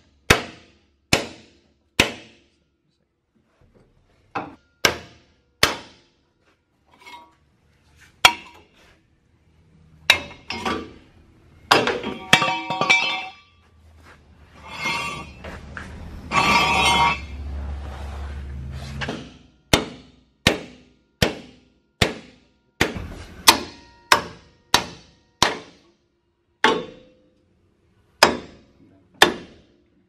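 Hammer strikes on a steel punch held in locking pliers against a truck's front leaf-spring hanger, knocking at the hanger to get it off the frame. The blows come singly, with short ringing, mostly one to two seconds apart and faster in the last third. A stretch of steadier, rumbling noise runs from about ten to nineteen seconds in.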